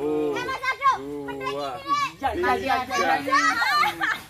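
A group of voices calling out and laughing over one another, with several people talking at once in the second half.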